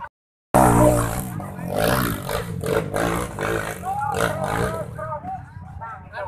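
Dirt bike engines revving close by, with people shouting over them; the sound cuts in about half a second in.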